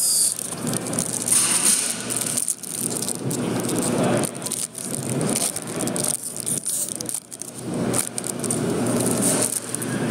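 Trading card packs being torn open and handled: wrappers crinkling and rustling, with many small clicks and scrapes of cards, broken by a few brief pauses.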